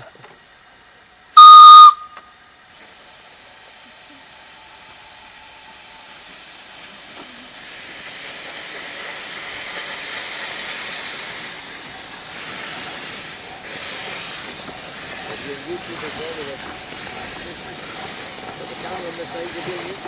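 A steam locomotive's whistle gives one short, very loud, shrill blast about a second and a half in. Steam hiss then builds steadily to loud as the locomotive pulls away, with an uneven pulsing to it in the later part.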